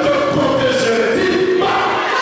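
Group singing of a worship song, with voices led through a microphone over the room.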